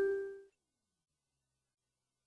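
A single bell-like chime, a cartoon sound effect, fading out over the first half second, then silence.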